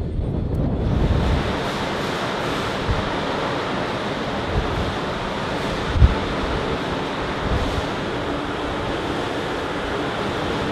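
Steady rush of wind and sea wash around a ship underway, with wind buffeting the microphone. A single brief thump about six seconds in.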